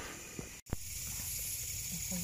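Quiet night-time outdoor ambience: a steady, even high-pitched hiss over a faint low rumble, with a sudden momentary dropout about half a second in.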